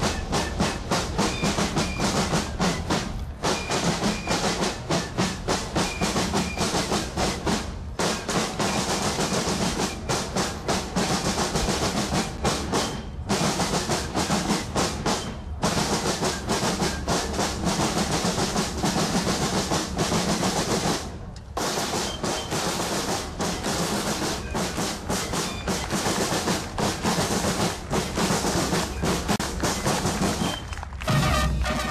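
Snare drums of a military drum-and-bugle band (banda de guerra) playing a rapid marching cadence with rolls. The drumming breaks off for a moment every few seconds.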